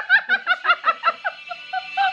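A woman laughing hard in a rapid run of high-pitched 'ha' pulses, about five a second, tailing off into softer, sparser ones in the second half.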